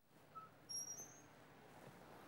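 Faint outdoor ambience with a few short, high bird chirps a little under a second in.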